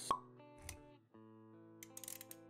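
Intro-animation sound effects over background music: a short bright pop just after the start, then a soft low thud a little after half a second. The music's held notes drop out briefly at about one second and come back, with quick clicks near the end.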